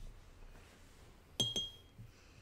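A wooden-handled paintbrush tapping twice against the rim of a glass water jar while being rinsed, two quick clinks with a brief glassy ring.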